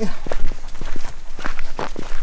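Footsteps walking on a sandy dirt road, a few irregular steps.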